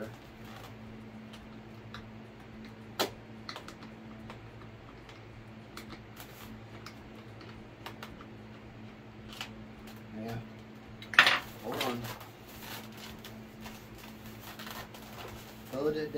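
Small scattered clicks and ticks of a screwdriver working a small metal screw down into a model plane's foam fuselage, with one sharper click about three seconds in. The screw is not yet catching its thread. A steady low hum runs underneath.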